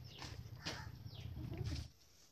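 Light rustling and crinkling as a pile of thin white paper strips is scooped up by hand, over a low rumble that cuts off just before the end.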